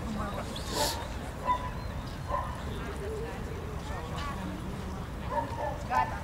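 A dog giving short yips and whines several times over the murmur of people talking.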